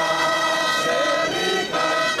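A group of people singing together in held notes, with a short break near the end.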